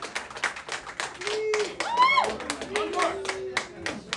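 People clapping after a song, with a few voices calling out over the applause, one rising call about halfway through.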